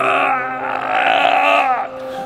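A man's drawn-out, wavering vocal cry lasting nearly two seconds, then cutting off.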